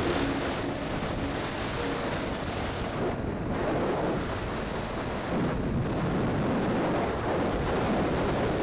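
Wind buffeting the microphone of a handlebar camera on a scooter moving at road speed, a steady rush of wind and road noise.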